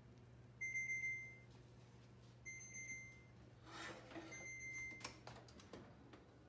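Electronic oven beeper sounding three times, each a high fluttering beep just under a second long, about two seconds apart. A brief rustle comes between the second and third beeps, and a click follows the last.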